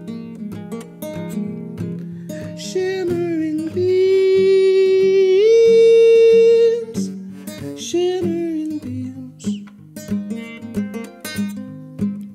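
Nylon-string classical guitar fingerpicked, with a long wordless sung note from about four to seven seconds in that steps up in pitch midway and is the loudest part.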